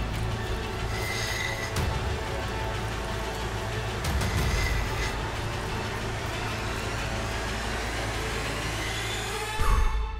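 Steady hum of a bench lapidary grinding wheel running as a rough opal is ground against it, under background music.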